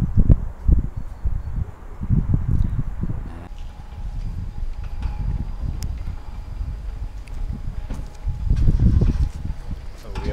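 Wind buffeting a handheld camera's microphone: gusty low rumbling that comes and goes, lighter from about three and a half seconds in and picking up again near the end.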